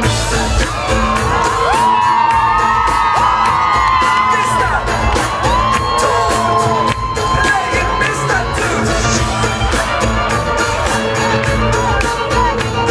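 Live band playing in an arena through the PA with a steady drum beat and heavy bass, heard from the crowd, with fans whooping and screaming over the music in the first half.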